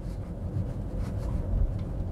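Steady low road-and-tyre rumble heard inside the cabin of an electric Tesla Model S Plaid rolling at about 25 mph, with no engine note.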